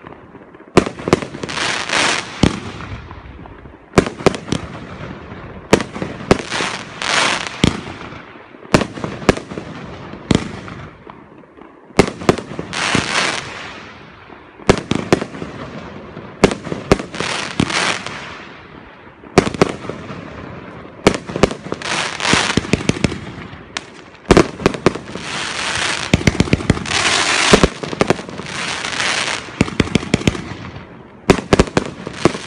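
Consumer fireworks cake firing shot after shot, about one every one to two seconds. Each shot is a sharp bang followed by a hissing, crackling spread of stars. A dense run of rapid crackles comes near the end.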